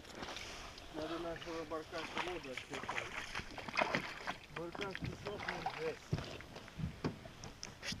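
A man's voice talking quietly some distance off, with a few short knocks and splashes from someone wading in shallow water and handling a small boat.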